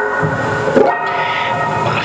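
Samick electric guitar through an amp, holding sustained, droning notes, with a quick downward pitch dip and return just before the middle.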